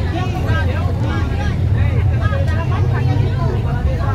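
Steady low drone of a moving road vehicle's engine and road noise, heard from inside the vehicle, with voices talking faintly over it.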